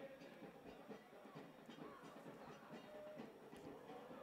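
Near silence: faint, steady stadium background noise.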